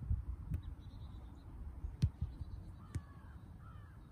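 A soccer ball kicked back and forth in a passing drill: three sharp thuds, about half a second in, at two seconds and at three seconds. Birds call faintly in the background.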